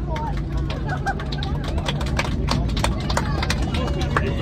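Passengers clapping in an airliner cabin, a dense patter of claps from about a second in, over the steady low hum of the aircraft taxiing, with people talking.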